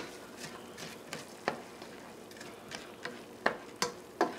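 Spoon stirring broccoli and instant rice in a saucepan of hot, steaming water, with a handful of sharp clicks of the spoon against the pan over a faint steady hiss.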